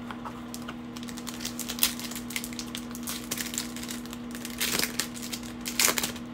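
Foil trading-card pack wrappers crinkling and crackling in the hands, a run of small clicks with louder crackles about four and three-quarter seconds in and again near the end. A steady low hum runs underneath.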